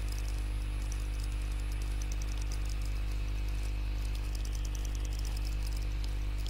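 Steady low electrical hum with a few fainter higher tones above it, and a faint crackle, unchanging throughout: mains hum in the recording chain.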